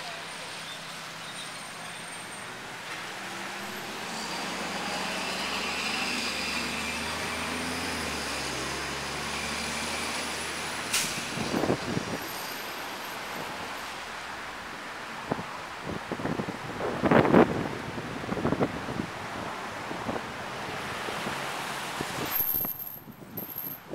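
Street traffic on a wet road, with a heavy vehicle's engine rising and fading over several seconds. About halfway through the sound cuts off sharply, and a run of irregular knocks and rustles follows, the loudest a cluster about seventeen seconds in.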